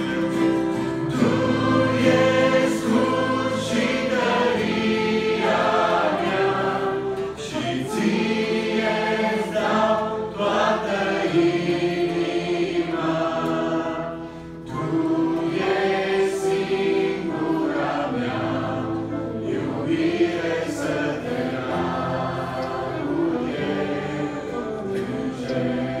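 Mixed youth choir singing a worship song in Romanian, in sustained phrases, with a brief drop in the sound between phrases about fourteen seconds in.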